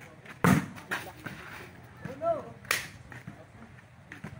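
A volleyball being struck by hands during a rally: a sharp slap about half a second in, and another near three seconds.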